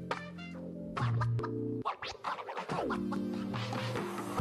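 Background music: held chords, with a quick run of sharp clicks about a second in and a falling sweep near the end.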